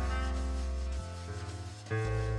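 Background music: sustained chords over a low bass note, the harmony changing about a second in.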